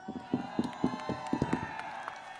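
Large rally crowd cheering and shouting back at a speaker's greeting, with a run of sharp claps or beats through the first second and a half.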